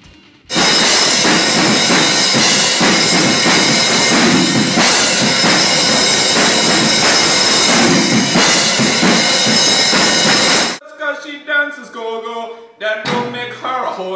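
A recorded rock track with drums played back very loudly from the recording session, starting about half a second in and cutting off suddenly near eleven seconds. A voice follows in the last few seconds.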